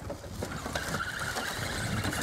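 Electric motors and gear drivetrains of two RC rock crawlers whirring steadily as they crawl slowly over scrap wood.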